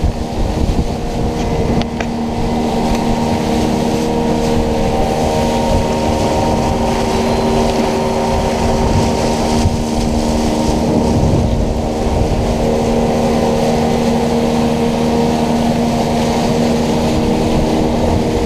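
Outboard motor of a wooden river longboat running steadily at cruising speed, a constant drone with water rushing along the hull.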